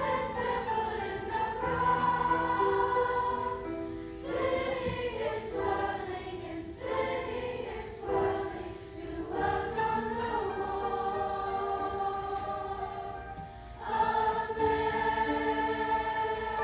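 Middle school choir singing held chords, with short breaks between phrases and fresh entries several times.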